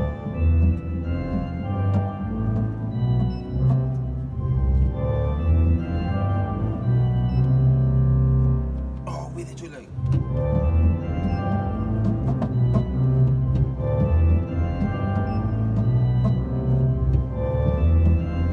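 Organ pedalboard played with the feet: a line of deep, sustained bass notes stepping from one pitch to the next. The playing breaks off for about a second near the middle, with a brief noise, then carries on.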